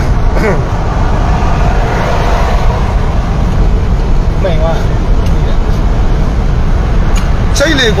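Steady low rumble of a vehicle heard from inside its cabin, with faint voices now and then. A man starts talking and laughing near the end.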